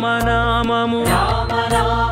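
Telugu devotional song music: a melodic line bending in pitch over a steady low drone, with regular percussion strikes.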